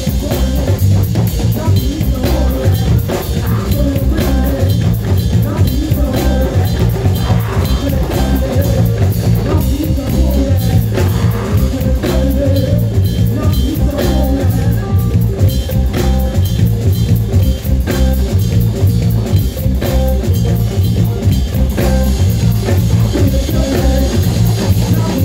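Live band playing an Afrobeat-style groove: drum kit and electric bass keeping a steady, repeating beat, with djembes alongside.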